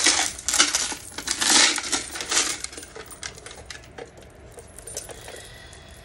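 Plastic polyhedral dice rattling and clicking inside a clear plastic box as it is shaken and handled: a dense rattle over the first three seconds, then scattered clicks that thin out.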